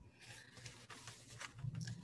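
Faint rustling and soft scraping of a sheet of calligraphy paper being handled, with a few light taps.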